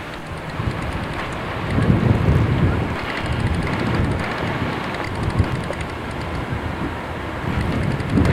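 Wind buffeting the microphone outdoors, a rough low rumble that swells about two seconds in and then carries on.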